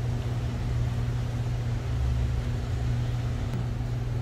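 Steady low mechanical hum with faint room noise.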